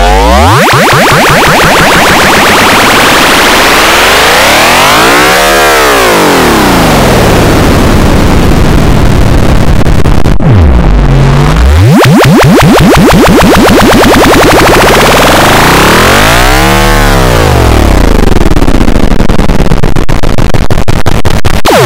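Samsung phone startup jingle warped by heavy pitch and distortion effects. It is loud and harsh, and its pitch sweeps down and back up in wide arcs. It plays twice, breaking off and starting over about halfway through.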